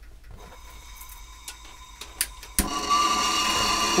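LP gas hand torch: a few faint clicks, then about two and a half seconds in it lights with a sharp pop and burns with a loud, steady rushing flame. The sound is as loud as a cutting torch, the sign of the high pressure of LP gas compared with butane.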